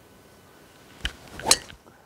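Golf driver striking a teed ball: a short swish building into a sharp, loud crack at impact, with a brief click about half a second before it.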